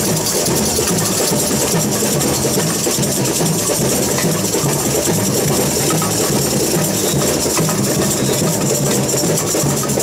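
A samba percussion band (bateria) playing a steady groove: metal shakers make a dense, continuous hiss over a repeating low drum beat.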